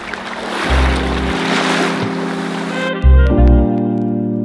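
Small waves washing onto a sandy beach, with background music fading in under them about a second in. About three seconds in, the wave sound cuts off and the music, with a deep bass, carries on alone.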